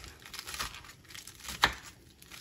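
Kitchen knife cutting through lettuce on a wooden cutting board: a leafy rustle and crunch as the blade goes through, with a few sharp knife strikes on the board, the loudest about three quarters of the way through.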